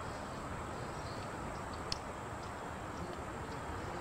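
Steady outdoor background noise with a few faint high chirps and a single faint click about two seconds in.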